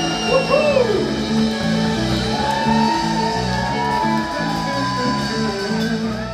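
Live funk jam band playing an instrumental passage, with electric guitars, electric bass, drum kit and congas. A lead line wavers with bent notes about a second in and holds one long note through the middle, over a stepping bass line.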